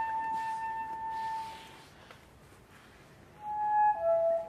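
Soprano saxophone holding one long, steady note that fades away about two seconds in. After a short near-silent pause, a new, slightly lower note begins near the end.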